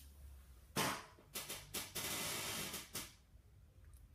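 Handling noise close to the microphone: a sharp knock about three-quarters of a second in, a few quick clicks, then a second-long rustle and one more click, as a phone and its cable are handled.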